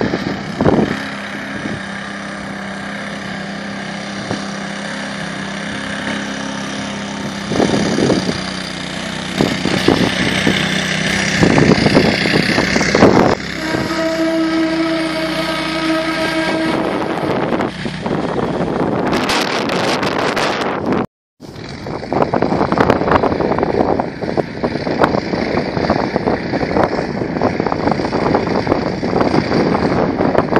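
Engine of a Borus SCOUT-PRO XL amphibious all-terrain vehicle running as it drives through water, with splashing and churning from the hull and wheels. The sound drops out suddenly for a moment about two-thirds of the way through, then returns with steady engine and water noise.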